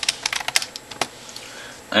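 Computer keyboard keys clicking as a short command is typed: a quick run of keystrokes in the first second, then one last key press about a second in.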